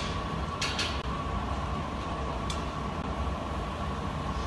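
Steady roar of a glass studio's gas-fired glory hole and blowers, with a steady high hum over it and a few light clicks near the start and in the middle.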